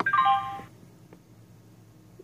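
US10C fingerprint time clock giving a short electronic chime of several tones stepping down in pitch, lasting about two-thirds of a second, as a key is pressed and the menu opens.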